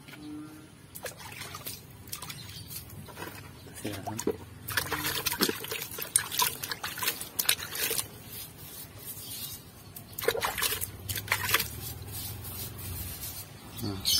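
Water poured onto freshly planted cactus offsets in a pot of potting soil, trickling and splashing in two spells, about five seconds in and again about ten seconds in.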